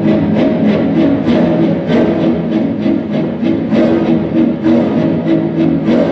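Recorded orchestral music with bowed strings playing loudly, driven by a steady pulse of about four beats a second.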